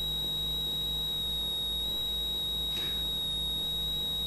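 A steady high-pitched electronic whine with a low hum beneath it: electrical noise in the sound system or recording. A faint brief rustle comes about three seconds in.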